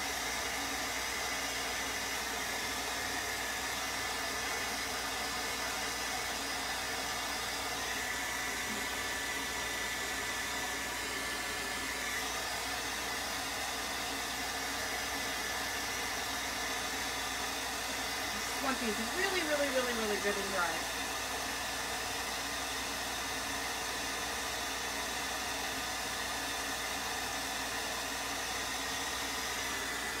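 Handheld hot-air dryer blowing steadily as it dries wet paint on wooden craft cutouts. A short vocal sound breaks in about two-thirds of the way through.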